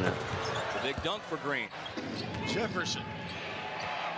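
Basketball game broadcast audio: arena crowd noise with a basketball bouncing on the court, under quieter play-by-play commentary.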